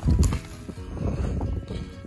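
Wind buffeting the microphone in an irregular low rumble, strongest in a brief gust right at the start, over faint background music.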